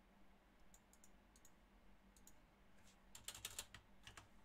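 Faint computer keyboard clicks, a few scattered key presses and then a quick run of them near the end, against near silence.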